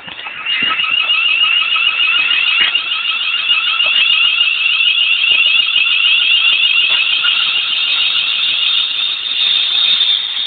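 Class 350 Desiro electric multiple unit passing close alongside the platform, giving a loud, continuous, high-pitched warbling squeal.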